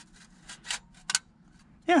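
A few short scrapes and one sharp click a little past a second in, as a metal car-stereo mounting cage is pushed into the dash opening; the old cage clamps in and fits.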